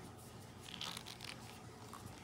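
Hands handling a plastic hydration bladder's bite valve and hose: faint crinkling and rustling of the plastic, strongest about a second in, with a few light clicks.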